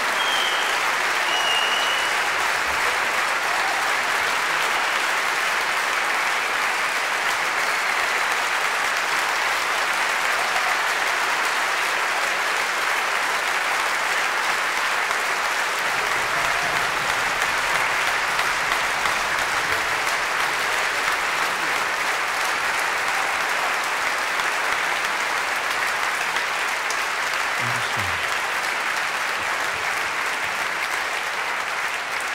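Large audience applauding steadily, a sustained ovation of many hands clapping.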